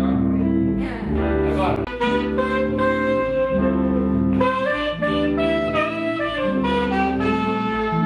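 Small jazz group playing: a saxophone carries a sustained melody over electric guitar chords and a low bass line, with notes changing about once a second and a bent note near the start.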